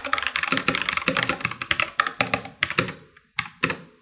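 Computer keyboard being typed on rapidly as code is entered: a fast run of keystrokes for about three seconds, then a few single key presses with short pauses near the end.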